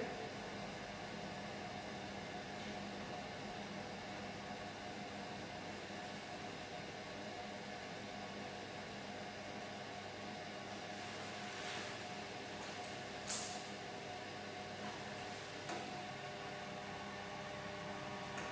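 Electric potter's wheel running with a steady hum. A couple of brief sharp sounds come a little after the middle.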